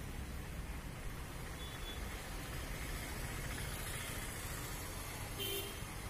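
Steady outdoor background noise, a low rumble with an even hiss, and a brief faint tone about five and a half seconds in.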